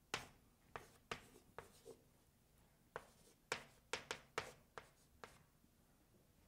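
Chalk writing on a chalkboard: a run of short taps and scratchy strokes as characters are written, in quick clusters with a brief pause of about a second near the middle.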